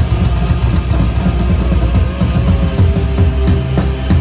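Live hard rock band playing loud, with distorted electric guitars, bass and a drum kit driving a steady beat, and cymbal crashes standing out near the end.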